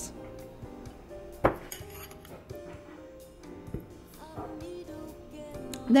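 A metal utensil clinking against a ceramic bowl as guacamole is scooped out and spread onto a wrap: one sharp clink about one and a half seconds in and a lighter one near four seconds, over soft background music.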